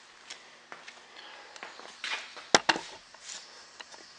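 Faint scattered clicks and brief rustles, with one sharp knock about two and a half seconds in: handling noise as the camera is moved and set down.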